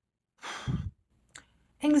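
A woman's breathy sigh, about half a second long, with a low puff of breath on the microphone. She starts speaking again near the end.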